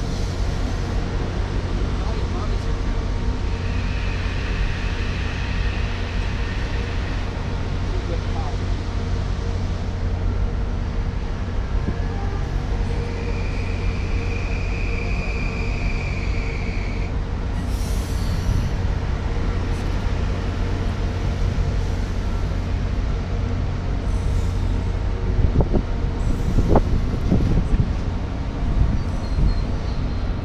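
Metro-North electric train idling at the platform, its rooftop equipment running with a steady low hum and drone. Two spells of air hissing a few seconds long, near the start and in the middle.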